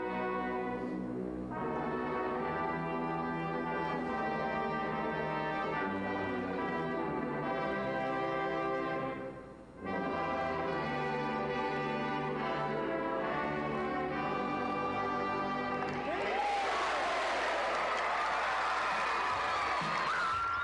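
Brass band playing the national anthem in slow, held chords, with a short break about halfway. About sixteen seconds in the anthem ends and a crowd cheers.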